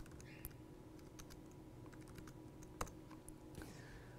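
A few faint, scattered clicks of a computer keyboard, with one louder click about three-quarters of the way through, over low room hum.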